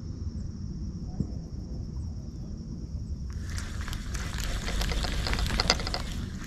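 A spinning reel retrieving line as a lure is reeled up through the water to the boat. About three seconds in, a hissing, crackly splashing starts and grows louder, over a steady low rumble and a high hum.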